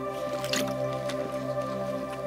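A soft, sustained chord of background music holds steady under close crinkling and squishing from a plastic water bottle as someone drinks from it, with a sharp crackle about half a second in.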